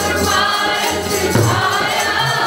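Sikh kirtan: a mixed group of voices singing a hymn together, carried by the steady reedy tone of harmoniums, with tabla strokes underneath and a deep drum thud about one and a half seconds in.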